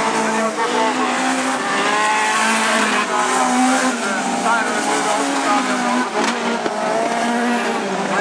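Several autocross race cars' engines revving, their pitch rising and falling in short runs as the cars race round a dirt track.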